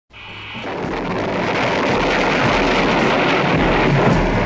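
A dense, rumbling wash of noise fades up over the first second and then holds loud, the opening swell of a hip-hop remix's intro.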